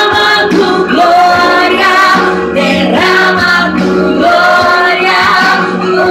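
A woman singing into a handheld microphone, holding long notes, with music behind her voice.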